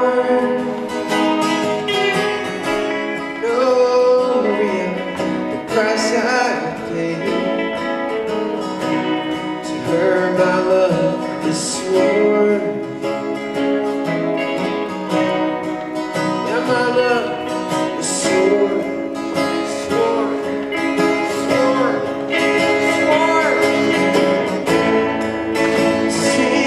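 A live duo of strummed acoustic guitar and electric guitar playing a country-style song, with a man singing over them.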